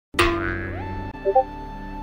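A sudden springy sound effect bursts in out of silence, then background music carries on with sustained tones and a quick three-note figure a little over a second in.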